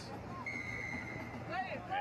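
Referee's whistle blown once, a short steady blast about half a second in, over steady crowd noise: play is stopped for the penalty because no advantage came.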